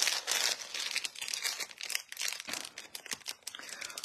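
Crinkling and rustling of material being handled close to the microphone, in irregular crackles that are densest in the first half-second.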